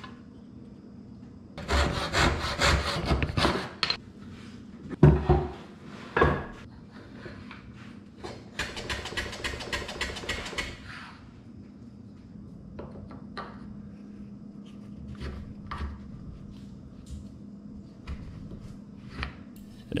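Brass-backed backsaw crosscutting a narrow octagonal walnut stick held in a bench hook, in two runs of quick, short strokes. A couple of sharp wooden knocks fall between the runs, and light clicks of wood being handled follow.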